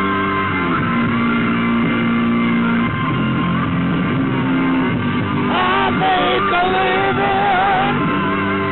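Rock band playing live, with guitar to the fore. About five and a half seconds in, a voice comes in singing held, wavering notes over the band.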